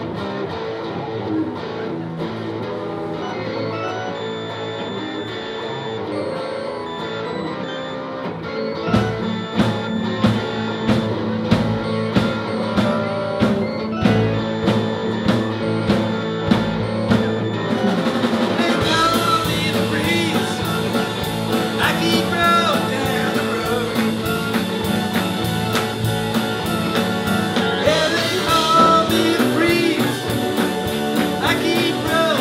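Live blues-rock band playing: an electric guitar riff over bass and keyboards, with the drums coming in with a steady beat about a third of the way through and the full band, cymbals included, from a little past halfway.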